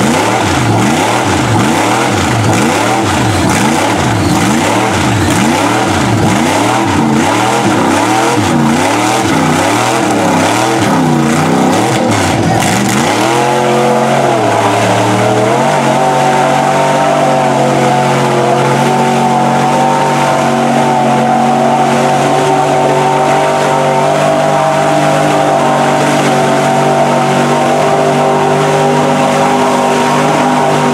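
Lifted Chevy mud truck's engine revved hard and let off about once a second as its giant tires spin in deep mud, then held at a steady high rev from about halfway through with the tires still spinning.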